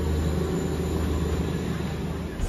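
Steady low rumble of a moving passenger train, heard from inside the coach.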